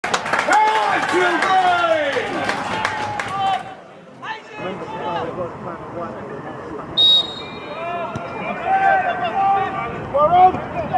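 Players' voices calling and shouting across an open football pitch, several overlapping at first and then more scattered. A brief shrill high tone sounds about seven seconds in.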